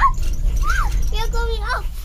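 A child's high voice speaking a few short sounds, over a steady low rumble inside a moving gondola cable car cabin.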